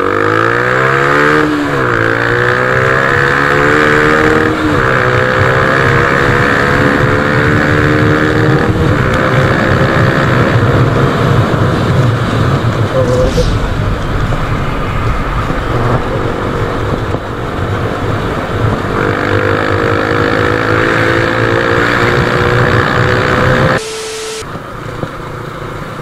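Yamaha Sniper MX 135's single-cylinder engine, running a power-pipe exhaust and geared 14-39, accelerating hard through the gears. The engine note climbs, drops back at each upshift about 1.5, 4.5 and 9 seconds in, then rises slowly at high revs. Near the end it falls away suddenly and goes quieter.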